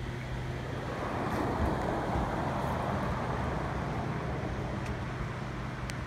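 Outdoor road traffic noise: a vehicle passing, swelling about a second in and fading after the middle, over a steady low hum.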